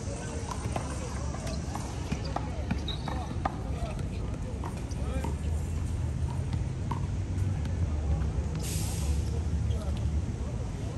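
Outdoor court ambience: indistinct distant voices over a low steady rumble, with scattered short knocks. A brief hiss comes near the end.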